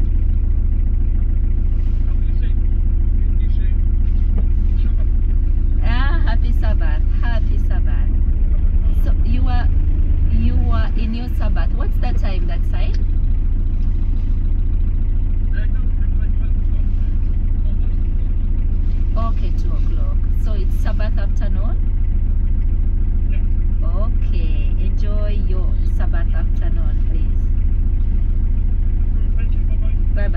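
Steady low rumble of a car idling, heard from inside the cabin, with a brief dip about eleven seconds in.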